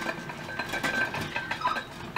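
Quiet handling noises: faint rustling with a few light clinks and knocks as household items are picked up and moved about.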